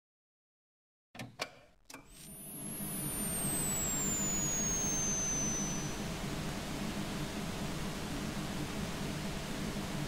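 Television static: a few clicks as the set comes on, then a steady hiss of white noise over a low hum. Two high whistles glide across the first few seconds of the hiss, one rising and one falling.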